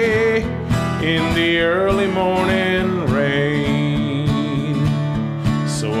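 Country-folk music: acoustic guitar with a steady strummed rhythm and a lead melody line that bends and glides in pitch over it, with no words sung.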